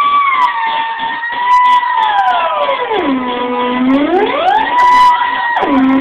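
Theremin playing one sliding note. It holds a high pitch, glides down, swoops low around the middle and back up, then drops low again near the end.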